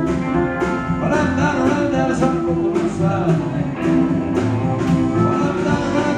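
Live country band playing an up-tempo number: electric guitars, pedal steel, piano, bass and drums, with a steady drum beat.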